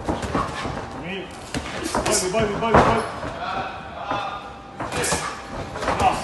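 Boxing gloves landing in sparring: a few sharp smacks, the loudest about three seconds in, with voices in the background.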